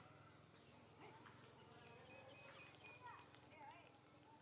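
Near silence: faint outdoor ambience, with a few faint squeaky calls about three seconds in.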